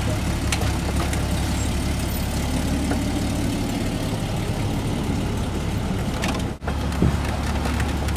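Car engine running, heard from inside the cabin as a steady low hum, with a few light clicks. All sound cuts out for an instant about six and a half seconds in.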